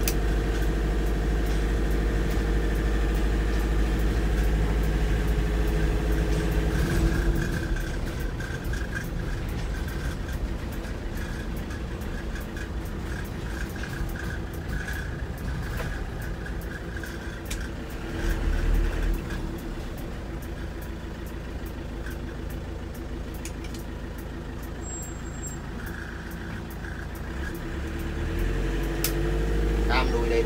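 The 2005 Ford Transit's diesel engine running, heard from inside the cab. It is loudest for the first seven seconds or so, then drops to a quieter, steady level, with a short swell about two-thirds of the way in and a rise again near the end.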